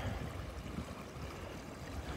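Faint, steady rush of a swift, high river current running along a rocky bank.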